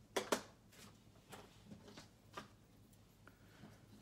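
Small scissors and cardstock handled on a desk: one sharp click about a third of a second in, then a few faint scattered taps and snips as cutting begins.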